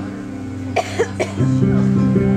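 An audience member coughs three times in quick succession, a little under a second in, over a fading sustained keyboard chord. A new chord comes in just before the end.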